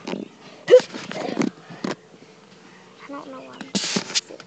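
Handling noise on a phone's microphone as it is moved about inside a car: a sharp knock a little under a second in, scraping and rustling, and a loud rustle near the end, with a brief snatch of voice.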